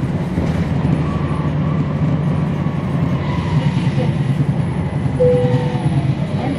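Cummins ISL9 diesel engine of a 2011 NABI 40-SFW transit bus running, heard from inside the bus: a steady low rumble with a faint whine that eases down in pitch, and a brief higher tone about five seconds in.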